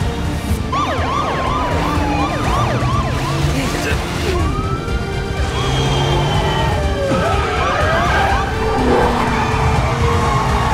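Police car sirens yelping in quick rising-and-falling sweeps, over vehicle engine noise and a low music score.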